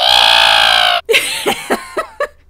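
A loud, held, pitched sound lasting about a second that cuts off suddenly, followed by several short bursts of laughter.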